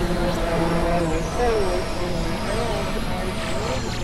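Experimental electronic noise music: a dense, steady wash of synthesizer drone and hiss, with warbling tones that slide up and down through the middle range.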